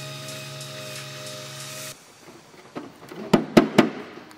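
Background music holding a chord for about two seconds, then cutting off. Near the end come about five sharp metallic taps in quick succession, as a small sheet-steel patch is fitted by hand against the car's engine bay.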